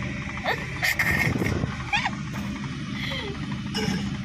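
Steady low hum of a car heard from inside the cabin, with a few short rising chirps about half a second and two seconds in.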